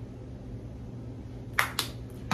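Steady low background hum, then two sharp clicks about a fifth of a second apart near the end.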